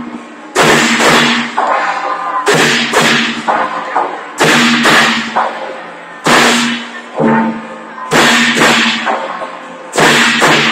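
A group of hand cymbals clashed together in unison in a steady processional rhythm. The crashes come in pairs about half a second apart, a pair roughly every two seconds, each one ringing on briefly.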